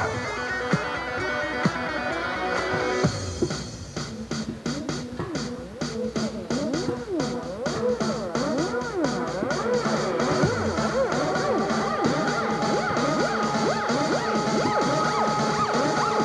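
Background music with a steady beat, electronic with guitar-like tones, changing its texture about three seconds in.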